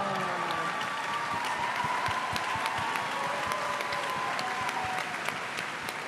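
Large audience applauding steadily, with the clapping easing slightly near the end.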